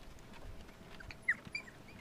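Silken Windhound puppies giving several short, high-pitched squeaks in the second half.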